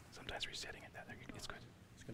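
Two men talking in hushed, whispered voices, faint and close to the microphone.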